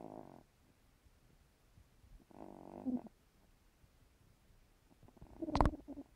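Elderly long-haired cat snoring in her sleep: three snoring breaths, each about half a second long, coming roughly every two and a half to three seconds. The last is the loudest and ends in a sharp catch near the end.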